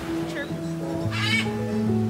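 Background music with long held notes; about a second in, a parrot gives one loud, wavering squawk over it.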